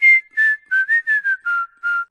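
Whistled advertising jingle: a short tune of about seven clear notes that steps down in pitch overall.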